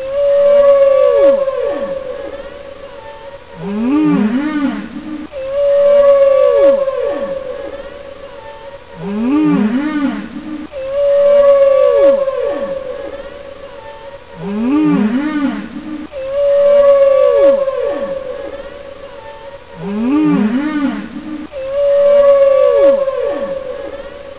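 A soundtrack of long, gliding, moaning calls in the manner of whale song, looping about every five seconds. Each cycle has a held high note that swoops down, then lower calls that rise and fall.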